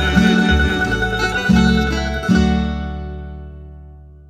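Tamburica-style plucked-string folk ensemble playing its closing chords. The final chord, struck about two and a half seconds in, rings out and fades away as the piece ends.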